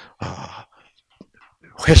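Speech only: a man talking into a microphone, with soft, breathy syllables early on, a quiet pause, and louder speech starting up near the end.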